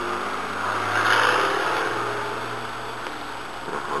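Farm tractor engine working in a nearby field during manure spreading, swelling about a second in and then fading away.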